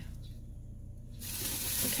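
A steady hiss comes in suddenly about a second in and swells slightly, over a low steady hum.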